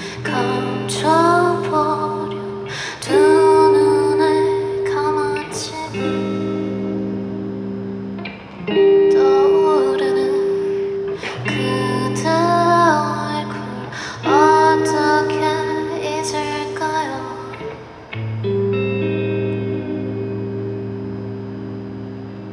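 A woman singing live while playing an electric guitar: held chords that change every two to three seconds under her sung phrases. Near the end the singing drops away over one long held chord.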